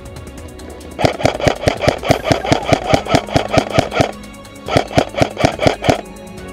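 Airsoft rifle firing two rapid bursts of shots at roughly six a second, a longer burst of about three seconds and then a shorter one after a brief pause, each shot a sharp mechanical crack. Background music plays underneath.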